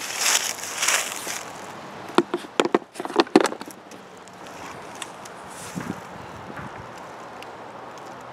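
Handling noise from a plywood pochade box being fitted onto a tripod: rustling at first, then a few sharp knocks and clicks about two to three and a half seconds in, then only faint background.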